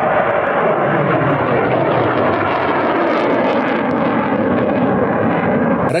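Solid-fuel rocket motor of a Buk surface-to-air missile burning just after launch: a loud, steady rushing noise that cuts off suddenly near the end.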